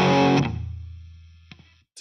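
Distorted electric guitar power chord ringing, then damped by the palm laid across the strings about half a second in. A low note is left fading out over the next second before the sound stops.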